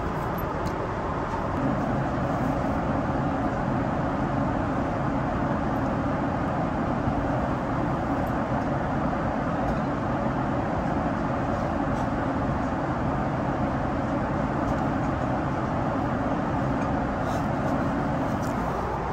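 Steady in-flight cabin noise of a Boeing 777 heard from inside the cabin: an even rush of airflow and jet engines, a little deeper from about two seconds in.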